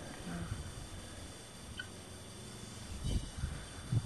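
Faint quiet background with a few soft low thumps about three seconds in and another at the end.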